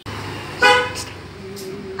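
A single short vehicle horn toot, one steady note, about half a second in, over a steady background hiss.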